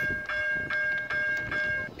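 Distant diesel locomotive air horn, a Nathan K3LA, sounding one long steady chord as the freight train approaches, cutting off near the end.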